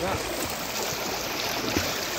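Pool water splashing and churning from a swimmer's freestyle arm strokes and kicks, a steady wash of noise.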